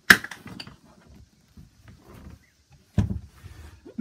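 A sharp knock right at the start, followed by a few smaller clicks and faint rustling, then a second thump about three seconds in: the knocks and bumps of someone moving about on the hard seat and fittings at the helm.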